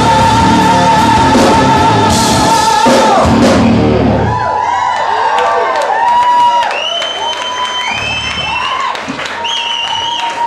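Live rock band with electric guitars and drums finishing a song, the singer holding one long high note. The music stops about four seconds in, and the crowd cheers and whoops.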